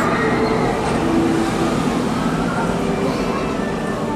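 Amusement-park monorail train running along its track, heard from the carriage: a steady rumble with faint whining tones drifting in and out.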